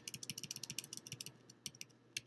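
Faint, fast run of computer keyboard key clicks, many a second and thinning out toward the end, as presentation slides are flipped through quickly.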